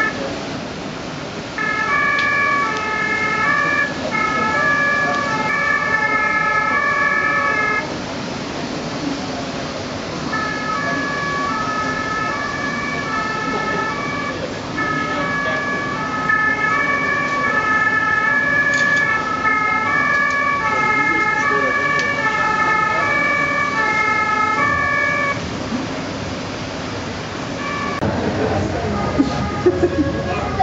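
Two-tone emergency-vehicle siren, German Martinshorn style, played as a sound effect on the miniature layout and alternating steadily between two pitches. It starts about a second and a half in, breaks off for a couple of seconds around eight seconds, then resumes and stops a few seconds before the end, over a steady hall background.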